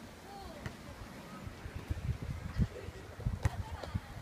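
Faint, distant voices, with gusts of wind buffeting the microphone that grow stronger in the second half.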